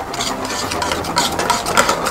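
A utensil stirring and scraping in a metal pan on the stove, with quick, irregular clinks and scrapes over a steady low hum.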